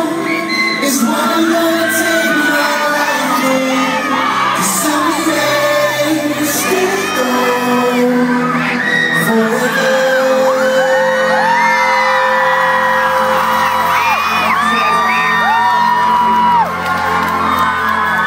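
Live pop band playing, with a male lead vocalist singing into a microphone over the band. Fans keep screaming and whooping in high, short cries over the music.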